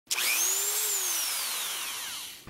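Logo sting sound effect: a sudden noisy whoosh with a thin whine that rises and then slowly falls, fading out.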